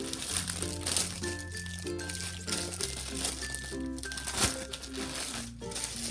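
Background music with a steady bass line, over the crinkling of plastic packaging being handled.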